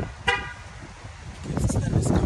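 A short single car-horn toot about a third of a second in, then a low rumble of wind and handling noise on the microphone that grows louder in the second half.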